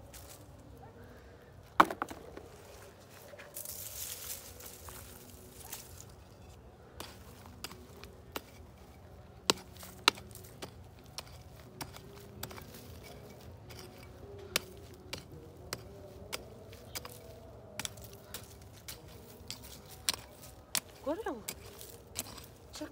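Small hand hoe striking and scraping dry, lumpy soil while digging up potatoes: irregular sharp knocks, the loudest about two seconds in, and a rush of loose earth crumbling around four seconds in.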